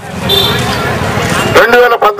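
A loud, steady rush of noise with no clear pattern for about a second and a half, then a man starts speaking into a microphone again near the end.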